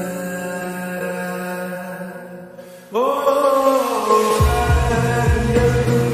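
Slowed, reverb-heavy lofi Hindi song: a long held vocal note fades away, then about three seconds in a new sung phrase begins with a slide up into the note, and a deep bass beat comes in about a second later.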